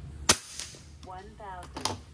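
A single shot from an FX Impact .30 PCP air rifle firing a 44-grain slug at about 1020 fps: one sharp, loud crack about a third of a second in. A fainter sharp click follows near the end.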